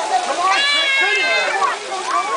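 A child's squeal, one high-pitched cry held for about a second, over the chatter of children and adults.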